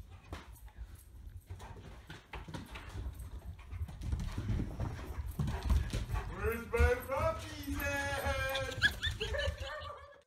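German shepherd whining and yelping in an excited greeting: a run of high cries that rise, fall and break, starting past the middle. Before that come dull thumps and scuffling as the dog runs about.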